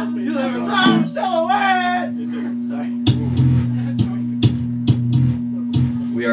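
A live rock band starting a song: voices in the first two seconds, then about three seconds in low electric bass notes come in with sharp drum-like hits, over a steady hum.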